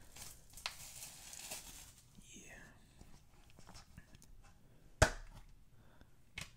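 Plastic shrink wrap crinkling and tearing as it is peeled off a multi-disc plastic case, then quieter handling. A single sharp plastic click about five seconds in, as the case is snapped open.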